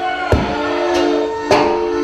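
Live Tejano band holding a steady sustained chord, with two sharp drum hits, one about a third of a second in and one about a second and a half in.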